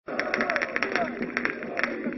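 A rapid, irregular string of sharp cracks from firecrackers set off by football fans, over the voices of a shouting crowd.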